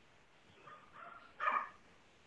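A dog, faint, gives a short whine and then a single sharp yip about a second and a half in.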